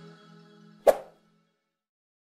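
Outro music fading away, then a single short, sharp pop sound effect about a second in: the click of an animated on-screen subscribe button.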